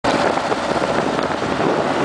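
Steady rush of wind and road noise from a moving motorcycle: a dense, even hiss with no clear engine note standing out.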